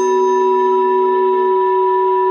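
A singing bowl struck once with a wooden mallet, then ringing on with a steady, clear two-note tone.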